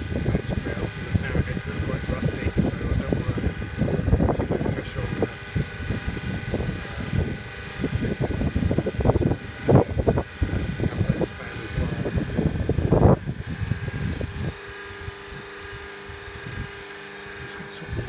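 Wind buffeting the microphone in uneven gusts. About fourteen seconds in it eases, leaving a faint steady hum.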